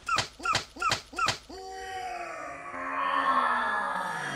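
A dog barking in quick yaps, about three a second, for the first second and a half, followed by a long howl-like cry that slides down in pitch and swells before fading.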